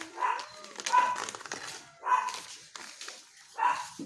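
A dog barking: four short barks spread across a few seconds.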